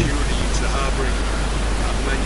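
Steady rushing noise, with a man's voice faint beneath it.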